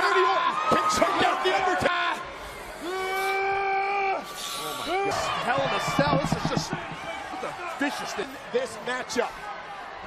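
Excited male commentary exclamations over arena crowd noise. A long held shout comes about three seconds in, and a few sharp thuds from blows in the wrestling ring follow.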